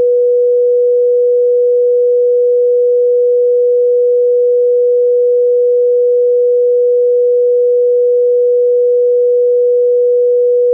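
Broadcast line-up test tone played with colour bars: a single loud, steady pure tone, unbroken and unchanging in pitch.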